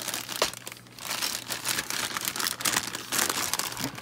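Clear plastic bag holding model-kit sprues crinkling and crackling in irregular bursts as it is handled, with a brief lull about a second in.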